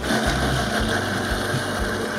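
Vitamix blender motor starting up abruptly and running at a steady high speed, puréeing whole strawberries and honey.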